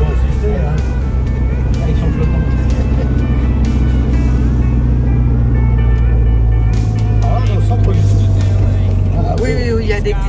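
Engine drone and road noise heard inside the cabin of a small vintage car on the move, a steady low rumble that grows a little stronger in the middle. Music and brief voices are mixed in over it.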